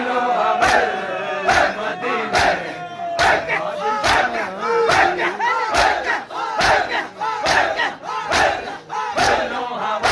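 A large crowd of men beating their chests in unison with open hands (matam), one collective slap about once a second in a steady rhythm. Many male voices chant and wail between the strokes.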